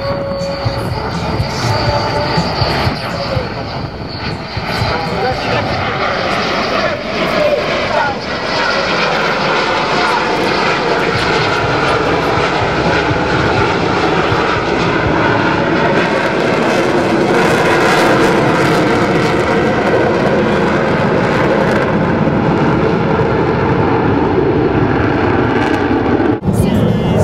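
Two F-16 fighter jets in close formation flying past, their jet engine noise steady and full, growing louder over the first several seconds and staying loud through the pass.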